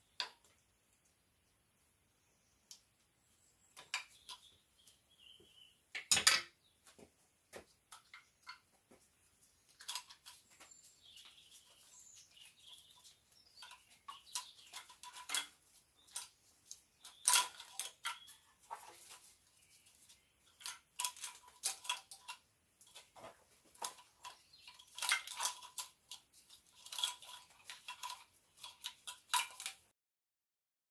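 Irregular plastic clicks, knocks and rattles of injector connector plugs and the wiring harness being unplugged and pulled off a BMW N57/N47 diesel engine, with the loudest clatter about six seconds in.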